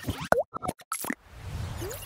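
Logo-animation sound effects: a quick run of short pops and plops, several with fast pitch glides, in the first second, then a softer whooshing stretch with a low rise and one short upward glide near the end.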